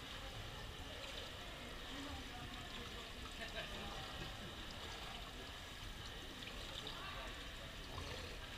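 Indoor pool ambience: a steady wash of water trickling into the overflow gutter at the pool edge, with faint murmured voices.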